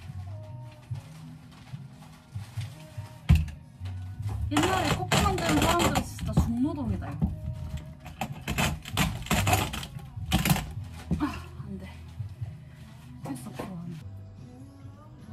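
Hand-cranked coffee grinder grinding beans in short, rhythmic strokes, under background music. A sharp knock comes about three seconds in, and a voice is heard in the middle.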